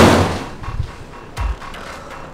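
A loud sudden impact that dies away over about half a second, then a duller low thud about a second and a half later, over background music.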